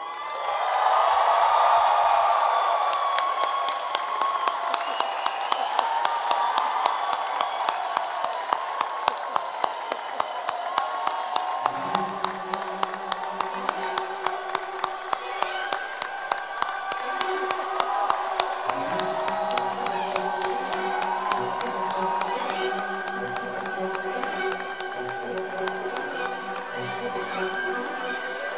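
A large crowd cheering, whooping and applauding with dense clapping, loudest in the first few seconds. About twelve seconds in, music with sustained notes begins under the applause and grows stronger.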